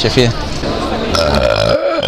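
A man's deliberate, long, low-pitched burp, starting about half a second in and lasting over a second.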